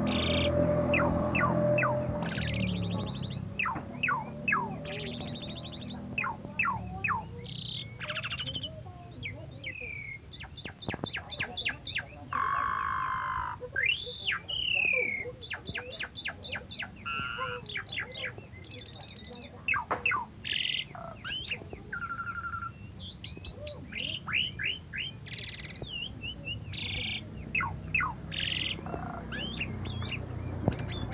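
Asian pied starling (jalak suren) singing a long, varied song of sharp chirps, whistled glides and fast rattling trills, with a few held buzzy notes.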